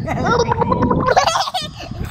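A young child's voice bubbling and gurgling as she hums with her mouth at the surface of the pool water, then a brief higher-pitched vocal sound about halfway through.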